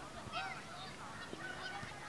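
Children's high-pitched shouts and calls, a string of short rising-and-falling cries, from players during a football game.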